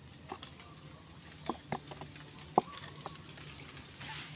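Footsteps on dry leaf litter: five or six soft, scattered crackles and clicks over faint background, the sharpest about two and a half seconds in.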